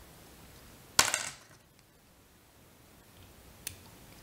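A small metal hand tool, likely the whip-finish tool, set down on a hard surface with a sharp clack and a short clatter about a second in. A faint click follows near the end.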